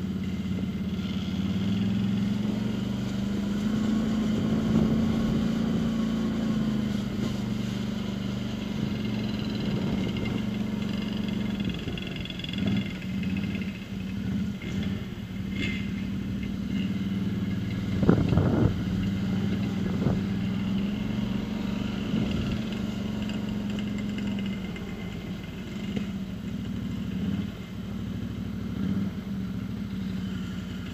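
Quad (ATV) engine running at low revs while being ridden slowly over rough gravel ground, its note shifting a few times with the throttle. A couple of knocks from the machine going over bumps come about eighteen to twenty seconds in.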